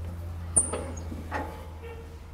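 Two sharp metallic knocks about a second apart as the cutting disc and blade guard of a brick-cutting saw are handled; the first rings briefly at a high pitch. A steady low hum runs underneath.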